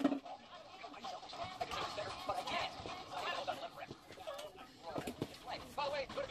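A small child's voice babbling faintly in the room, after a sharp click right at the start.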